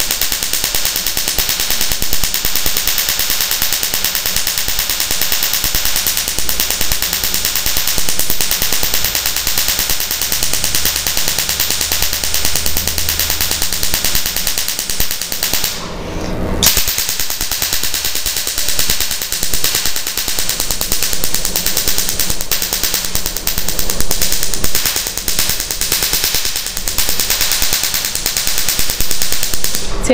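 Q-switched Nd:YAG laser of a carbon (Hollywood) peel firing rapid pulses into a carbon mask on the skin: each pulse snaps as it blasts the carbon off, giving a fast, continuous crackle like popping sparks. The firing stops briefly about halfway through, then carries on.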